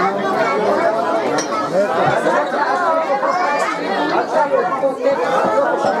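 Overlapping chatter of many voices talking at once, steady throughout, with no music.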